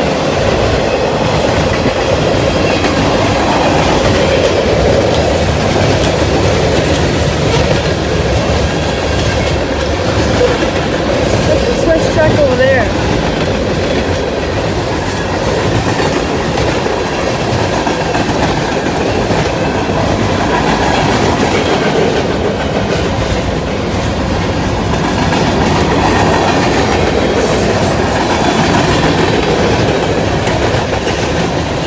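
Freight cars of a CSX train rolling past: a steady rumble and clickety-clack of steel wheels over the rail joints, with a brief wheel squeal about twelve seconds in.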